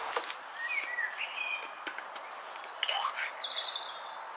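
Small birds singing: a few short warbling, chirping phrases, one about a second in and another near the end, over a steady outdoor hiss. A couple of sharp clicks break in near the start and just before the last phrase.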